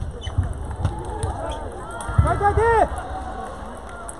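Sports hall din: voices and low thumps from play at the tables, with one loud short squeal that rises and falls in pitch a little over two seconds in.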